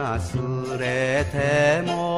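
Enka song: a male singer holds long notes with a wide vibrato over a band accompaniment that has a steady bass line.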